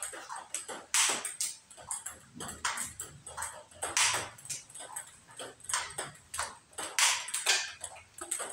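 Table tennis multiball drill: a quick, irregular run of sharp clicks as balls are fed onto the table, bounce and are struck by paddles. Louder bursts come about every three seconds.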